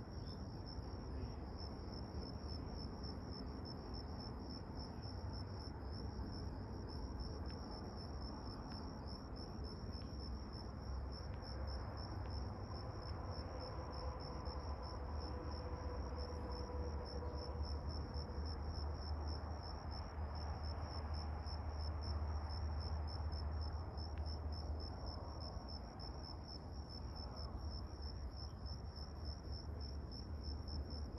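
Crickets chirping in a continuous, fast-pulsing high trill over a low steady rumble, with a faint hum swelling in the middle.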